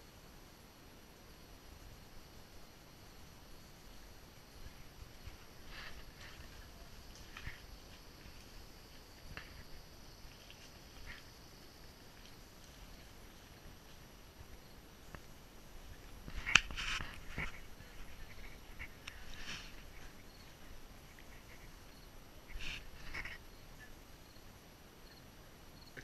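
Faint outdoor background with a few short, scattered sounds; the loudest is a sharp click followed by a brief burst about two thirds of the way through.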